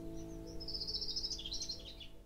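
Closing music held on a sustained chord as it fades out. A high, rapid chirping trill comes in over it about half a second in.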